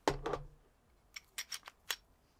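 Handling noise from a Glock 43 pistol being turned over in the hands: a short clatter at the start, then about five sharp clicks in the last second.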